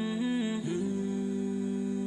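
Interlude music of a wordless hummed vocal melody: it moves through a few short notes, then holds one long note from about half a second in.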